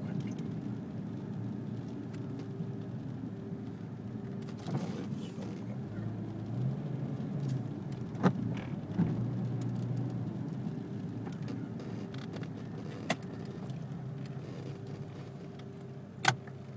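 Car cabin noise while driving slowly: a steady low engine and road hum, broken by a few short sharp clicks around the middle and one later on.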